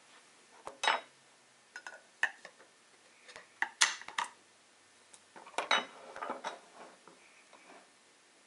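Disassembled lens barrel sections and metal rings clinking and knocking as they are handled and set down on a bench: a scattered series of sharp knocks, the loudest near the middle.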